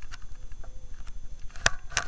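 Handling noise on a handheld camera's microphone: a low rumble with faint ticks, then two sharp clicks close together near the end.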